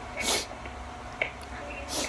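A person sniffling through the nose twice, about a second and a half apart, with a small click between, after crying.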